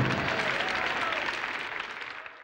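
Audience applauding at the end of a song, the applause gradually fading away.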